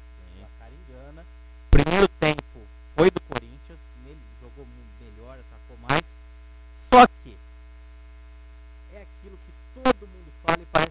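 A steady low electrical mains hum runs under the studio microphones. Faint, distant talk sits beneath it, and a few short, loud voice sounds break in about two, three, six and seven seconds in and again near the end.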